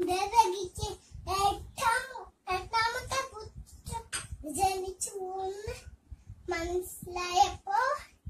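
A young girl's voice telling a story in Malayalam in a sing-song, half-chanted manner, with several drawn-out held syllables.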